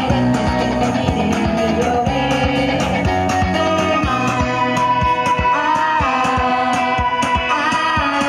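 A live pop-rock band playing, with electric bass, electric guitar and a steady drum beat.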